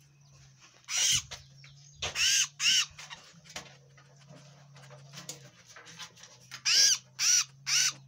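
A sanhaço (tanager) held in the hand giving loud, harsh distress calls, each rising and falling in pitch: one about a second in, two more close together a second later, then three in quick succession near the end.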